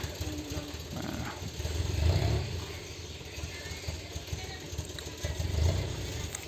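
A loaded dump truck's diesel engine running, ready to tip its load. It makes a low, uneven rumble that swells about two seconds in.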